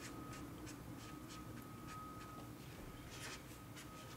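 Black marker drawing on paper: a run of faint short scratchy strokes as the tip moves across the sheet, over a faint steady high tone.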